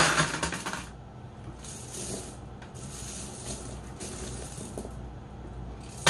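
Aquarium gravel and glass pebbles clinking and rattling against a glass fishbowl as a hand pushes them around. It is loudest in about the first second, then comes in several softer spells.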